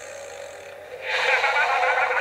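A cartoon monster's wavering, warbling vocal noise, heard through a TV speaker, starting about a second in after a quieter stretch.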